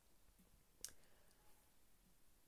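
Near silence: faint room tone, with a single short click a little under a second in.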